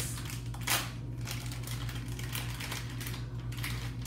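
Plastic blind-bag wrapper of a toy mystery pack crinkling and tearing as it is ripped open by hand: a run of small crackles, with one louder tear a little under a second in.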